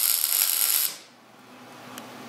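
Electric arc welding a tack onto stainless steel exhaust header tubing. A loud, steady hiss of the arc lasts about a second and then cuts off abruptly.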